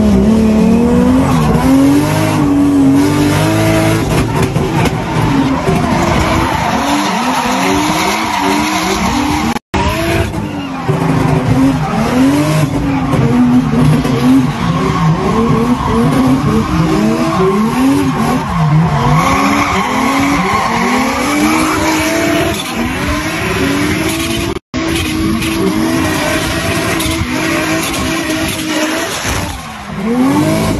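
Race car engine heard from inside the cabin, revving up and falling back over and over, with tyre squeal under it. The sound cuts out briefly twice.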